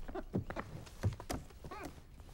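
A classroom chair being pulled out and sat in at a small desk: several light knocks, and a short squeak near the end.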